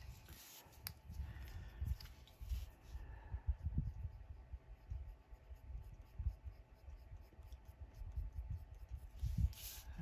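Coloured pencil shading on paper: soft, irregular scratching strokes of the pencil lead rubbing back and forth. A couple of sharper taps come about a second in and near the end.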